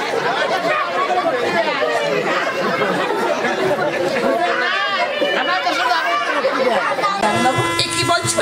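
Several voices talking over one another at once. About seven seconds in, instrumental music with long held notes starts up beneath them.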